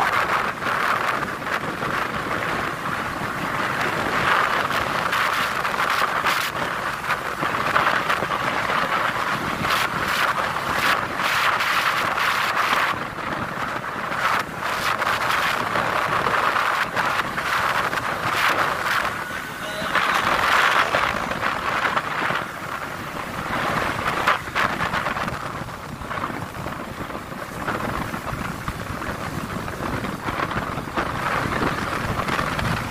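Wind rushing over the microphone of a moving motorcycle, a steady rush that swells and dips with short buffets, with the bike's running and road noise underneath.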